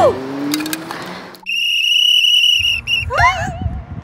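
A lifeguard's whistle blown once in a steady, high blast lasting about a second, starting about a second and a half in. Short voice sounds come just before and after it.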